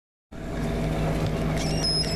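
The box truck running with a steady, even low hum. Near the end comes a short, high squeak of metal as its rear door latch is worked.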